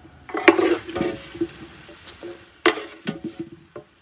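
A metal spoon scraping a glass bowl and clinking on the rim of a metal pot as fried onions and chestnuts are spooned across, with two strong strokes, about half a second in and near three seconds in, each leaving a brief ring.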